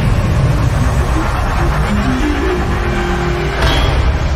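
Cinematic intro music and sound effects: a deep, loud rumble under a run of rising tones in the middle, then a sweeping whoosh near the end as the build-up peaks.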